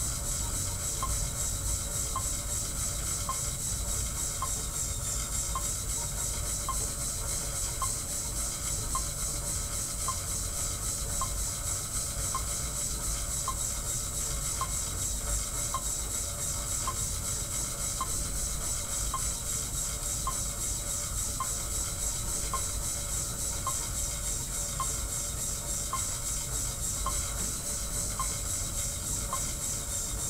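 Monark cycle ergometer being pedalled steadily under a friction-belt load: a constant hiss with a faint, regular click about once a second.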